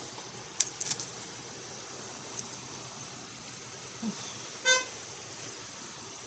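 A single short car horn beep about three-quarters of the way through, over a steady outdoor background hiss, with a few light clicks early on.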